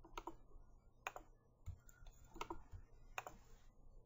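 Faint, scattered keystrokes on a computer keyboard: about half a dozen separate clicks a second or so apart as a web address is entered.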